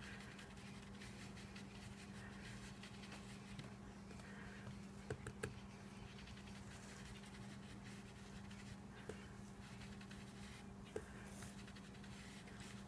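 A blending brush rubbing ink through a stencil mask onto cardstock: faint, soft swishing strokes repeated every second or two over a steady low hum, with a few faint clicks.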